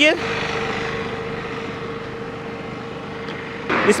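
Road traffic: a passing vehicle with a steady hum, slowly fading away.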